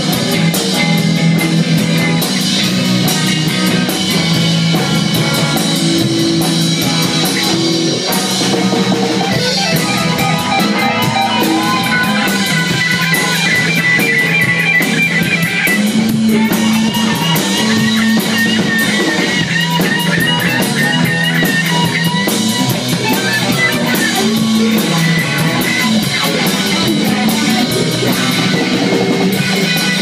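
Live rock band playing loud with bass guitar and drum kit, a Stratocaster-style electric guitar taking a lead line of wavering, bent notes through the middle of the passage.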